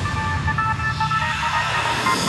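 Goa trance music: a held synth chord of several steady tones over a pulsing bass line, with a rising hiss in the high end about a second in.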